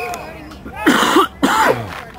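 A person shouting twice in quick succession, loud and close to the microphone, about a second in.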